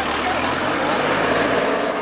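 A crowd of people talking and calling out over one another, with the engine of a police pickup truck running as it pulls away.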